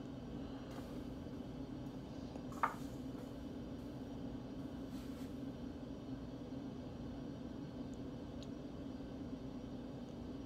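Steady low room hum, with one short soft knock a little under three seconds in, as a utensil touches the wooden cutting board.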